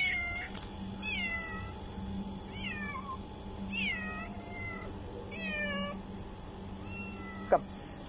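Domestic cat meowing repeatedly, about five meows a second or so apart, each one falling in pitch. A single sharp click near the end.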